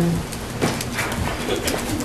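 A hummed 'um' that trails off at the start, then a pause of low room noise with a few faint clicks.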